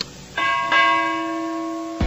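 A short click, then a bell-chime sound effect struck twice in quick succession about a third of a second in. It rings on with several steady tones that fade slowly and then stop abruptly.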